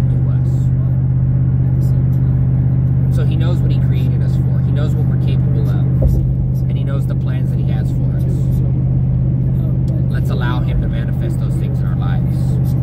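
Steady low drone of road and engine noise inside a moving vehicle's cabin at highway speed, with a man's voice talking over it and a single short thump about halfway through.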